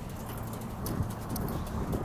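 Outdoor background noise with a few faint ticks and taps.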